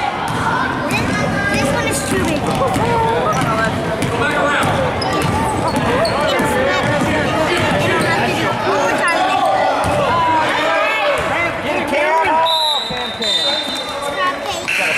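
A basketball being dribbled and bouncing on a hardwood gym floor, with overlapping shouts and chatter from players and spectators echoing in the gym. A steady high whistle sounds near the end.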